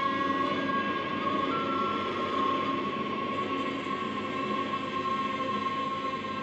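Sustained drone music: an ondes Martenot holds a steady high note, with a second, higher note entering about a second and a half in, over a dense low drone from a hurdy-gurdy.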